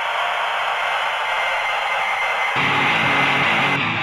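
Noise-rock music: a steady wash of distorted, static-like noise, with low guitar chords coming in about two and a half seconds in.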